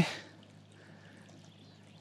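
Quiet outdoor background: a faint, steady hiss with no distinct event.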